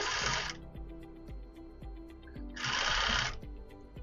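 Industrial sewing machine stitching through a crochet blanket's edge in two short runs, one right at the start and one about two and a half seconds in, with faint background music between.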